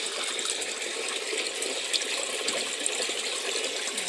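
Water running steadily in an aquaponics fish tank, an even rushing and splashing of the circulating flow.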